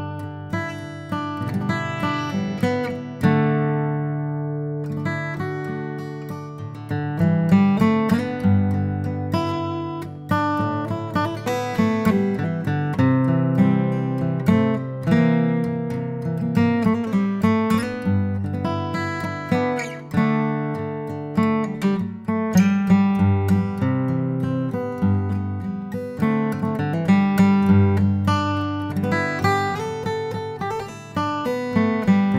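Sigma DM-18 dreadnought acoustic guitar, with laminate back and sides, played solo with a mix of picked notes and strummed chords. About three seconds in, one chord is left to ring out before the playing picks up again.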